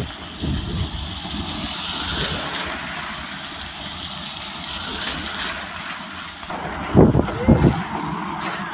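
A convoy of SUVs, Toyota Innovas among them, driving past with steady engine and tyre noise. A few loud low thumps come near the end.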